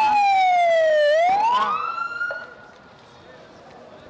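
Ambulance siren wailing: one long falling sweep, then a quick rise, cutting off about two seconds in. It signals an ambulance bringing in more wounded.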